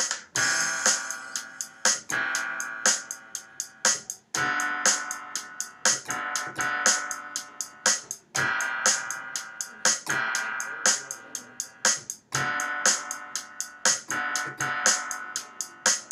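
Simple piano chords played on Reason's software piano over the Songstarter drum loop. The chord changes about every four seconds, with steady hi-hat ticks under it.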